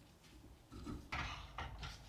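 Brief silence, then a few faint, short scuffing and rubbing sounds of a PC case being wiped down and handled.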